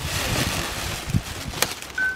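Plastic bag rustling and crinkling as it is handled and lifted out of a cardboard box, with a couple of sharp clicks near the end.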